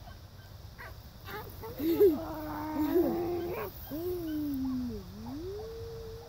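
Beagles baying on a rabbit's trail: long drawn-out bays, one held steady for over a second, then one that sags in pitch and rises again to a held note.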